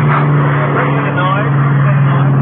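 Loud, steady aircraft engine noise with a low, even hum, drowning out a man's voice talking over it. In the radio gag it stands for the airport noise that the city official denies.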